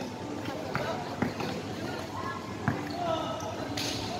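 A basketball being dribbled on a hard court floor during play, a handful of separate bounces at uneven spacing, with spectators' voices and shouts around it.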